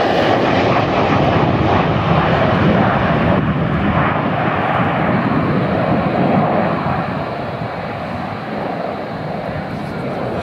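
Jet engine noise of a pair of F-16-type fighter jets flying low past in formation: a loud, steady rush that eases off after about seven seconds as they climb away.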